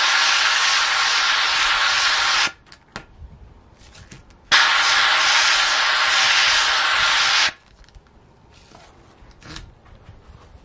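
Handheld steam cleaner jetting steam through a towel-wrapped nozzle onto vinyl decal, an even hiss in two blasts of about three seconds each with a short pause between, softening the decal's adhesive so it peels off.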